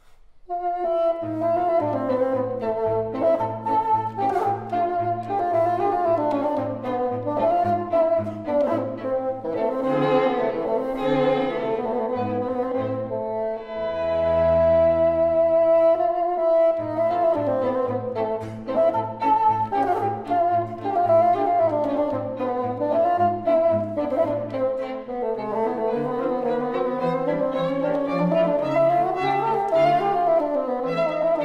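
Bassoon and string quartet (two violins, viola, cello) playing a chamber piece: the music comes in just after a short pause, with melodic lines over a low accompaniment of repeated notes, about two a second. About halfway through the ensemble holds one sustained chord, then the repeated low notes resume.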